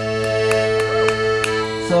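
Piano accordion holding a steady sustained chord, with a few short clicks over it.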